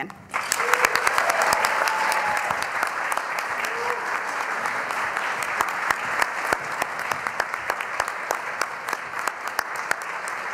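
Audience clapping, starting about a third of a second in and keeping up a steady patter of claps. A few voices call out over it in the first few seconds.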